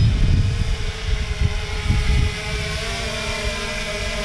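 3DR Solo quadcopter's rotors humming steadily in flight, the hum shifting a little higher past the middle as it moves. Wind rumbles on the microphone, strongest in the first half.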